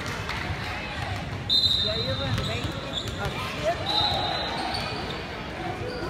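Voices of players and spectators talking in an echoing gymnasium, with a steady high-pitched squeal that starts about a second and a half in and lasts over a second, and a shorter one about four seconds in.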